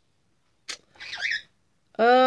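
A bronze-winged pionus parrot gives a single sharp click and then a brief, high, squeaky chirp about a second in.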